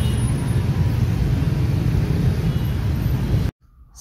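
Dense road traffic, mostly motorcycles with some cars, giving a steady low engine noise that cuts off suddenly about three and a half seconds in.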